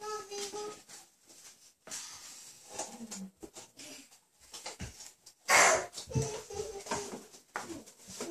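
A girl coughing: once right at the start, and a harsher, louder cough about five and a half seconds in, with wheezy breathing and small knocks between.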